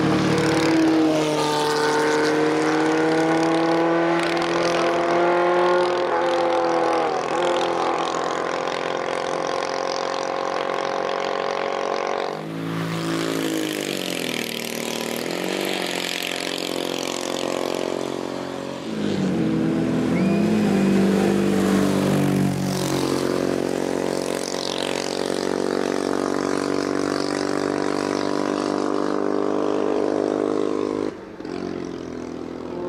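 Tatra 605 racing car's air-cooled V8 revving hard as it accelerates uphill. The pitch climbs and then falls sharply several times at gear changes and lifts for bends, and the car passes by.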